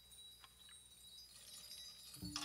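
A very quiet passage of small-group jazz: faint, held low double bass notes under a soft, high, chime-like metallic shimmer, with a light click about half a second in.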